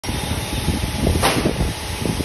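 Electric motor of a spring screw conveyor machine running, a steady mechanical noise with an uneven low rumble. A brief louder hiss comes a little past a second in.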